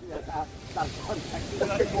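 Men's voices talking over uneven, low wind buffeting on the microphone.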